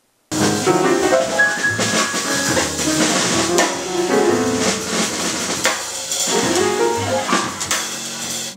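Freely improvised jazz piano: dense, irregular runs and chords with many sharp attacks, and drum and cymbal strokes underneath. It starts abruptly a moment in and runs without a break.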